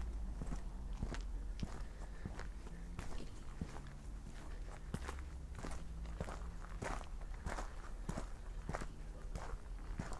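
Footsteps of a person walking at a steady pace on a rough tarmac path, about three steps every two seconds, over a low continuous rumble.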